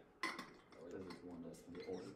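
A short, sharp clink of a small hard object about a quarter second in, followed by faint, low voices in the room.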